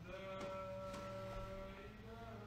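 A man's voice chanting the Islamic call to prayer (adhan), holding one long steady note.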